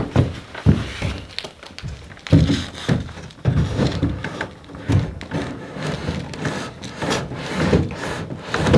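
Wooden window frame knocking and bumping against the log wall as it is lifted and pushed into its opening, a series of irregular wooden thuds and knocks.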